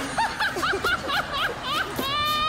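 A person snickering: a quick run of short, high-pitched laughs, about six a second.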